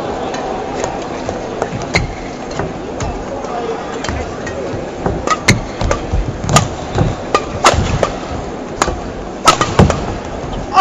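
Badminton rackets hitting a shuttlecock back and forth in a warm-up exchange: sharp hits, sparse at first, then quicker from about halfway, at one to two a second. Indistinct voices murmur in the hall.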